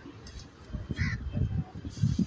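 A single short, harsh bird call about a second in, over a constant low rumble.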